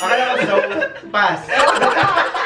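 A group of people laughing and talking over each other; the laughter gets louder about a second in, with quick, rhythmic ha-ha pulses.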